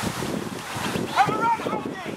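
Wind rumbling on the microphone, with raised voices shouting on and around the field; a loud shout comes about a second in.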